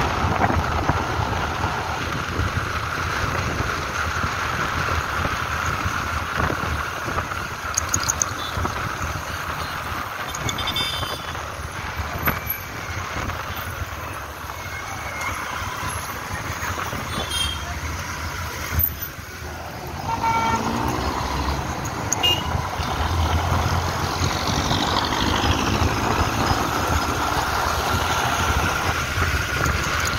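A motorcycle running along a busy city street, its engine and the rush of air filling the sound, with short car-horn toots from the traffic around it. The engine sound dips briefly about two-thirds of the way through and then rises again.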